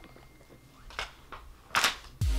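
Paper pages being turned in a ring binder: a soft rustle about a second in, then a louder, brief swish as a page flips over near the end.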